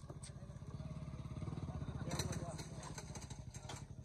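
A small engine running steadily with a fast low pulse, under faint voices of players.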